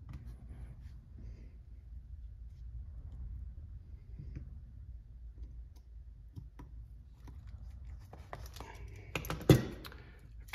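Small scattered clicks and taps of hands fitting the wheel hex and wheel onto an RC crawler's front axle, over a low steady hum. Near the end a louder clatter of handling, with one sharp knock as a tyred wheel is handled.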